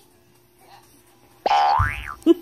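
Cartoon-style comedy sound effect: a sudden whistle-like glide rising steeply in pitch, about a second and a half in, with a low thump under it.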